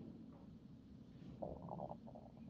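Faint low room hum in a pause between spoken sentences, with a brief soft rasping sound about one and a half seconds in.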